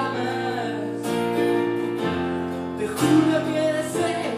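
Acoustic guitar and electric keyboard playing a slow song together, with held chords.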